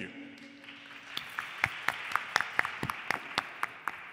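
Audience applauding: a small crowd clapping, with individual sharp claps standing out, starting about a second in and thinning near the end.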